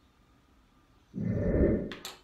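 A brief, loud, muffled burst of rustling noise close to the microphone, about three-quarters of a second long, ending in a sharp click: the sound of someone moving right beside the mic.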